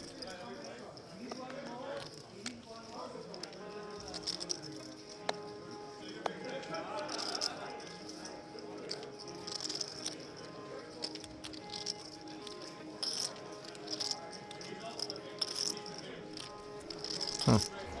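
Soft background music with long held notes over the murmur of a busy card room. Clay poker chips click and clatter repeatedly as they are handled and bet.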